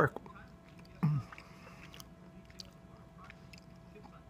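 Chewing a red Twizzler licorice twist: faint, scattered mouth clicks, with a brief vocal sound about a second in.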